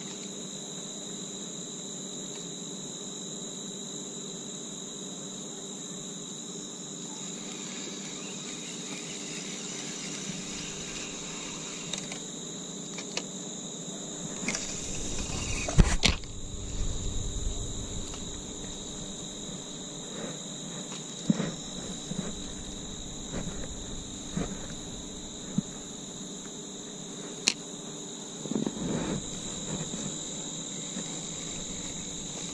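Steady high chorus of crickets, with scattered clicks and rustles of a spinning reel and line being handled, the sharpest click about halfway through.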